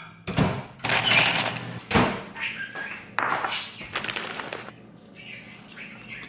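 A series of knocks and rustling from things being handled at a kitchen counter, with a few sharp thunks among longer rustling stretches, dying down near the end.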